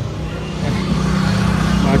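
A motor vehicle engine running steadily nearby, growing louder about half a second in.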